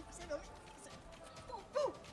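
A man's voice making short non-word vocal sounds. Near the end comes a louder cry that rises and falls in pitch.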